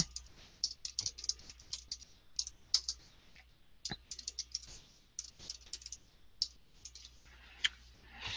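Typing on a computer keyboard: irregular keystrokes in short runs with brief pauses between them.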